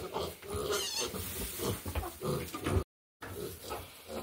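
Kunekune pigs grunting in short, irregular grunts. The sound cuts out briefly about three seconds in.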